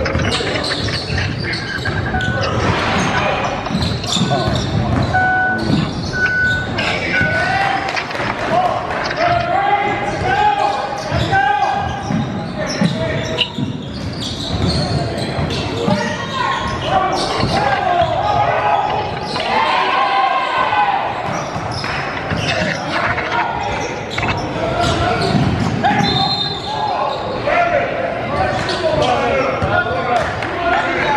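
A basketball bouncing on a hardwood gym floor during play, under indistinct voices, echoing in a large hall.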